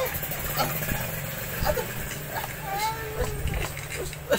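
A steady low hum runs under a few brief voice sounds, the clearest a short gliding call about three seconds in.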